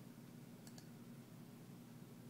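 Near silence: room tone, with two faint, quick clicks a little under a second in.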